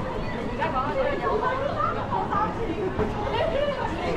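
Nearby pedestrians chatting as they walk: several voices talking, becoming clearer about half a second in, over a steady low city-street background.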